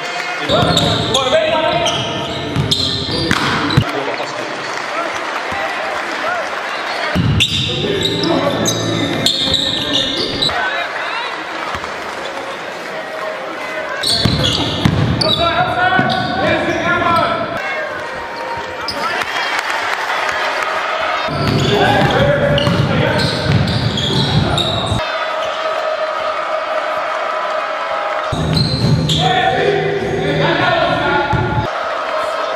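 Basketball in a gym: unclear voices and crowd noise, with a ball bouncing on a hardwood court.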